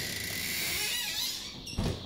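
A cupboard door being opened: a steady scraping squeak lasting about a second and a half, then a couple of sharp clicks near the end.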